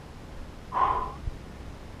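A man's short, breathy exhale of about half a second, less than a second in, as he moves into a yoga pose.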